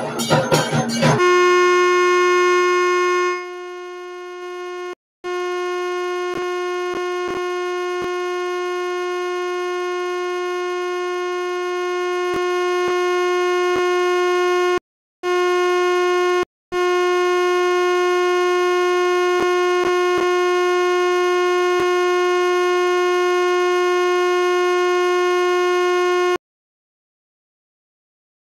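Music with bells and percussion cuts off about a second in. It is followed by a single loud, steady, sustained tone with many overtones, which drops out briefly a few times.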